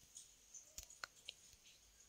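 Near silence with a few faint, short clicks scattered through it, the clearest three coming in quick succession around the middle.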